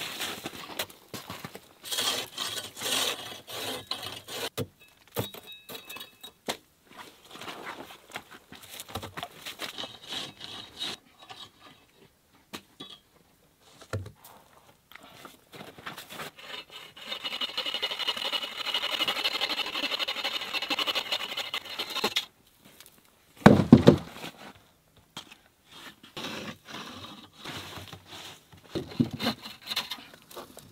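Scattered scrapes and knocks of wood being handled, then a hand saw cutting through a wooden pole in quick strokes for about five seconds past the middle. A loud thump follows.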